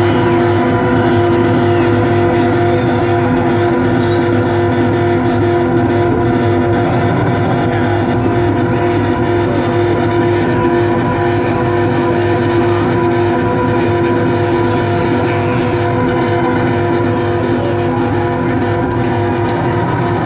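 Loud, steady drone of sustained, unchanging musical tones from a rock concert's sound system, with crowd noise mixed in beneath.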